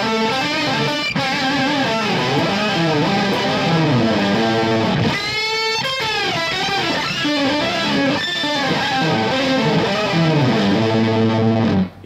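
Electric guitar played through an EarthQuaker Devices Pitch Bay pitch-shifting pedal, with pitch-shifted harmony voices added to the played notes at the interval just dialled in. The playing is full of bent notes, with a fast sliding sweep about halfway through.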